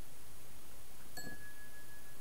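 A single light strike about a second in, followed by a clear bell-like tone that rings on steadily, over a steady background hiss.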